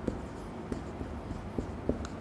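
Marker pen writing on a whiteboard: a series of short, light strokes and taps as characters are written.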